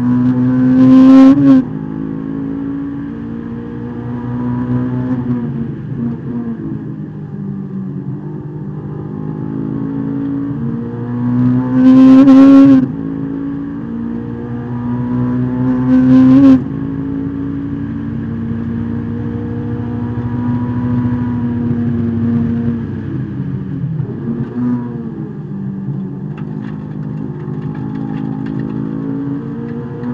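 Honda S2000's inline-four engine heard from inside the cabin at racing speed, revving hard through the gears. Its pitch climbs to a loud peak and drops sharply at each upshift, three times (near the start, about halfway, and a few seconds after that), and it falls away in slower sweeps under braking for corners.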